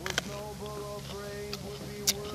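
A bite into a firm, unripe apricot: a couple of crisp clicks just after the start, with another faint click later. Soft background music with held notes plays under it.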